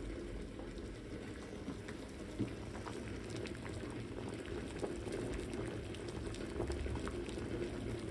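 A saucepan of eggs at a rolling boil, the water bubbling steadily with many small pops.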